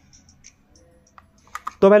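Very quiet for over a second, then a few light plastic clicks from handling a wireless earbuds' charging case, followed by a man starting to speak.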